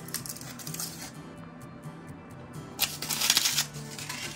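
Soft background music, with a brief rustling, clicking burst of handling noise about three seconds in as a small plastic toy capsule and figure are handled in the hands.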